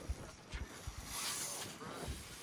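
A small RC rock crawler tipping over and scraping across a granite rock face, with a few dull knocks and a brief scraping rush about a second in.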